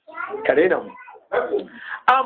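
A man's voice speaking, with a short pause a little over a second in.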